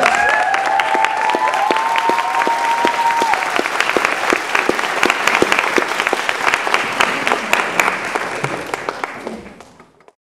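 Audience applauding, a dense steady clapping that fades out near the end. A few drawn-out cheers ride over the clapping for the first three seconds or so.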